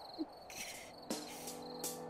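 Crickets chirping in a steady high trill, with soft music of held notes coming in about a second in.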